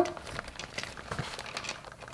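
Faint rustling and crinkling as hands handle an open leather handbag and slip a lipstick in among the items inside.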